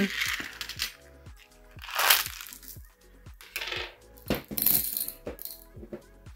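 Handfuls of beads clattering and clinking into a glass jar in several short rattles, over background music with a steady beat.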